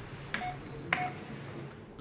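Two presses on an ultrasound machine's keyboard, about half a second apart, each a click followed by a short beep.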